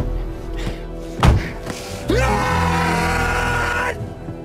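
Dark, sustained string underscore from a TV drama's score, with a sharp thud at the start and a heavier one about a second later. About halfway in, a tone glides up and holds steady over a hiss, then cuts off just before the end.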